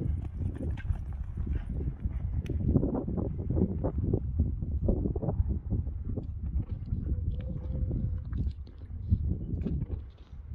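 A horse's hooves thudding on a sand arena as it is ridden, a continuous irregular run of low thuds.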